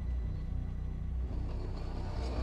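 Low, steady rumbling drone of an ominous film-score underscore, with faint held tones above it.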